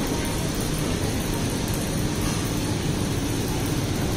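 Steady background din of a shop interior: a continuous low rumble and hiss with no distinct events.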